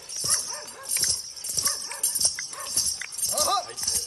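Bells on a dancing horse's legs jingling in a steady rhythm, about two shakes a second as it steps and prances, with soft hoof thuds on grass. A short high call rises and falls near the end.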